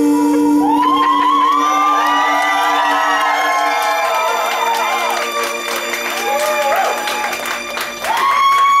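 The song's final held note playing over the sound system, ending about halfway through, with the audience cheering and whooping over it from about a second in.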